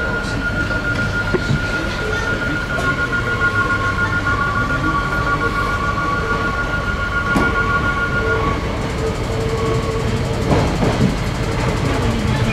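AGC bimode railcar (BGC Normandie) pulling slowly into the station, its running noise carrying steady high-pitched whining tones over a low hum; the tones fade out about nine seconds in.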